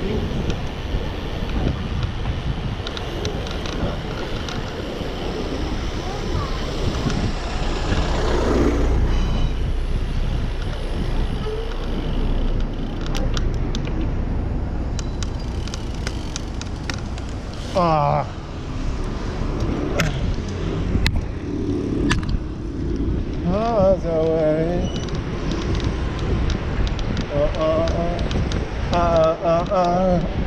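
Steady wind and road rumble on a bicycle-mounted action camera while riding through city streets, with a few sharp clicks in the middle. From about halfway on, a voice sings wavering snatches of a tune.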